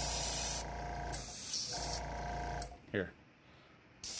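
Airbrush spraying acrylic paint in two short hissing bursts of about half a second each, fed by a small electric airbrush compressor whose hum runs beneath. The spraying stops about three seconds in.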